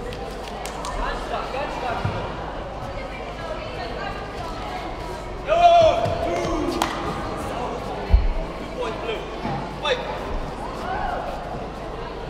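Shouted calls from coaches and spectators during a kickboxing bout, including one loud drawn-out yell about halfway through. Several dull thuds break in, the loudest about eight seconds in.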